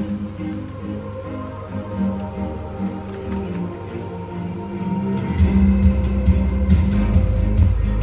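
Light-show music playing from a Tesla Model Y's speakers through its open windows: sustained notes over a steady low bass, with a heavier bass coming in about five seconds in.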